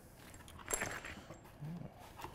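Faint handling sounds: a few light clicks and rustles as a coiled cable is lifted out of a cardboard box, with a brief low hum near the end.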